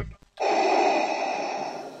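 Darth Vader-style respirator breathing sound effect: one long, noisy mechanical breath that sets in sharply about a third of a second in and slowly fades.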